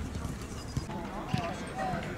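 A football being kicked and touched on artificial turf: a few separate sharp knocks of foot on ball, with short distant calls of voices.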